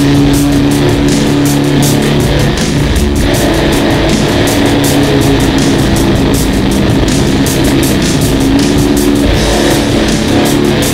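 Instrumental heavy metal: distorted electric guitar holding sustained low notes, which shift about three seconds in and again near the end, over drums with fast, even cymbal strikes.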